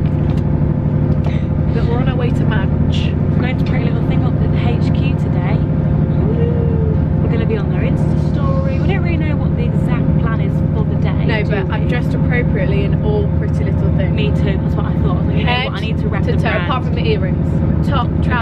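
Steady low hum and rumble of a moving train, heard from inside the passenger carriage, under people talking.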